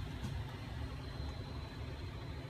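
Steady low hum of a running air-conditioning system, with no distinct events.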